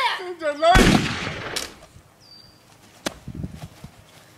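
A single gunshot about a second in: one loud crack with a tail that dies away over about a second. A short sharp click follows near three seconds.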